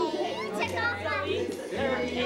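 Young children's high-pitched voices chattering and calling out together in a room, over a low steady hum.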